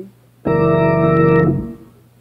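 Organ playing one sustained chord, a step in a D major gospel 'preacher chord' progression. It comes in about half a second in, is held for about a second, then fades out.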